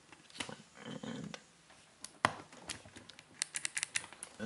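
Low-profile mechanical key switches being handled and pressed into hot-swap sockets on a Dirtywave M8: scattered small plastic clicks and taps, with one sharp click about two seconds in and a quick run of small clicks near the end.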